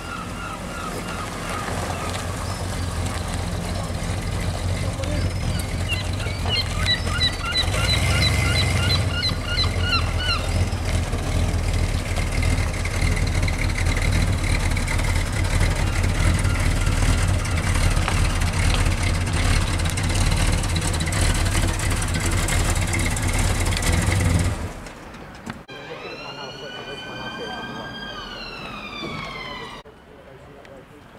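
Big V8 engine of a 1970s Chrysler Town & Country station wagon running steadily, louder from about eight seconds in, then stopping abruptly a few seconds before the end. A quieter wailing tone follows, rising and then falling in pitch.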